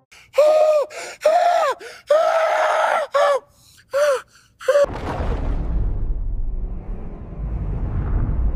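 A man's strained vocal cries, about six in a row, each rising and falling in pitch. Just before five seconds in they give way to a deep, steady rumble.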